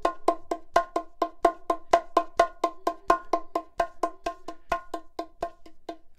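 Bongos played lightly with the fingertips: a steady stream of quick, ringing strokes, about five a second, in a repeating left-right pattern grouped two-three-three, some strokes louder than others. The strokes stop just before the end.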